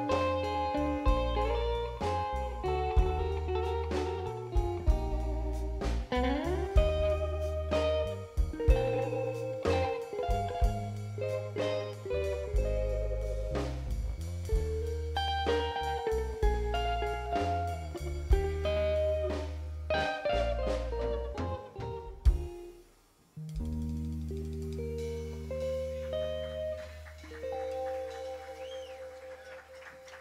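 Live band instrumental: an electric guitar plays a lead solo, with bent and sliding notes, over bass guitar and drums. The band stops sharply about three-quarters of the way through, and a final held chord rings out to the end, closing the song.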